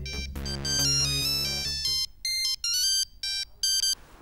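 A mobile phone ringing with an electronic melody ringtone. Low held tones sound under it for the first two seconds; after that the melody goes on alone as short, separate beeping notes.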